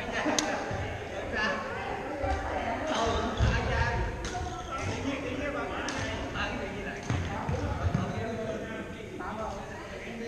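Echoing gym sounds of doubles play on a wooden court: a few sharp racket hits and low thuds of feet on the floor, over a bed of distant voices.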